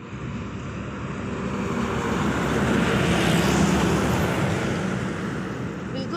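A road vehicle passing close by, its engine and tyre noise growing louder to a peak about halfway through and then easing off.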